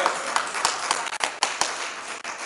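Scattered, irregular hand claps from people in a church, over a haze of crowd noise.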